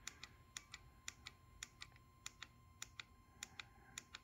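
Faint, quick clicks, about four a second, of a KTM 890 Adventure R's handlebar menu buttons being pressed repeatedly to scroll through the dashboard settings menu.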